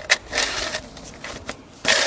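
Engine oil dipstick handled in its tube while checking the oil level: a sharp click just after the start, some rustling, then a louder scrape near the end as it is drawn back out.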